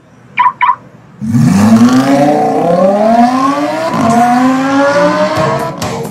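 Two quick electronic beeps, then a Lamborghini Huracán's V10 engine accelerating hard away. It is very loud, its pitch climbing and dropping back through about three upshifts before it falls away near the end.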